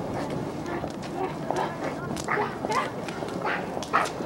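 Indistinct voices in short, broken snatches, with a few sharp clicks, the loudest near the end.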